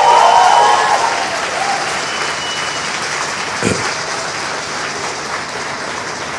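Conference audience applauding, loudest at first and then settling into steady clapping.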